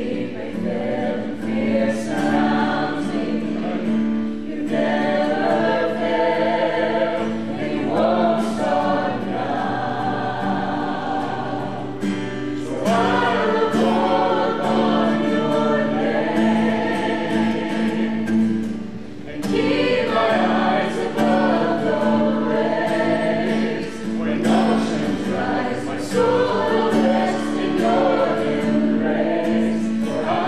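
A small group of young men and women singing a song together, accompanied by an acoustic guitar. The singing comes in phrases with brief pauses between them.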